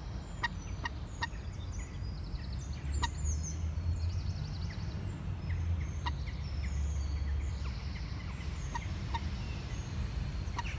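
Wild birds calling and singing: short, sharp calls at irregular moments, with fast high twittering from small songbirds mostly in the first half. A steady low rumble runs underneath.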